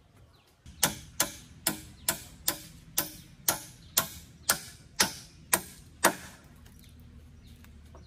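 A hammer striking a round wooden pole, about a dozen sharp blows at a little over two a second, which then stop.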